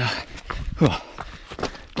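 A runner's footfalls on a rocky trail, with a breathy exhale at the start and a short falling vocal sound about a second in.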